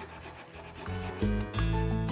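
Red onion being rubbed over a plastic hand grater in quick, repeated rasping strokes, faint. Background music with a strong bass comes in about a second in and becomes the loudest sound.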